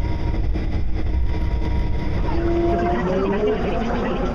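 Steady low rumble of a moving electric train. About two seconds in, several whining motor tones start rising in pitch as it accelerates.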